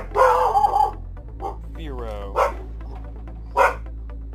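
A dog barking in the house, several short barks, with a longer wavering cry about two seconds in.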